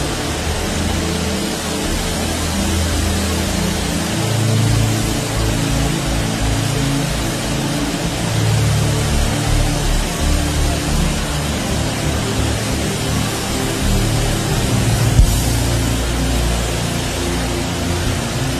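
Sustained low keyboard chords under a steady wash of many voices praying aloud at once.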